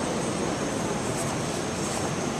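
Steady, even roar of background noise in a large hall, unchanging throughout, with no distinct knocks or voices standing out.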